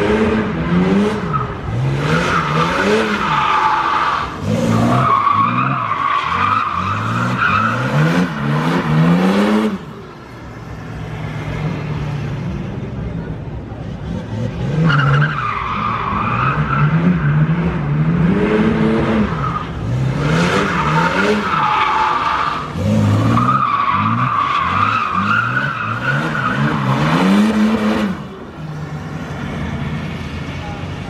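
A drift car's engine revving hard up and down while its tyres squeal through long slides. This comes in two runs, with a lull of a few seconds about a third of the way in.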